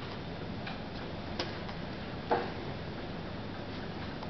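Three short, light clicks spaced about a second apart, the last one the loudest, over a steady background hiss of room noise.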